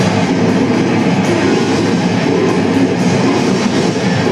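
Grindcore band playing live: distorted electric guitar, bass and drums in a loud, dense, unbroken wall of sound.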